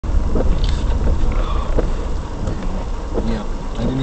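Low, steady rumble inside a stopped car's cabin, heard through a dash cam's microphone, with faint voices in the background.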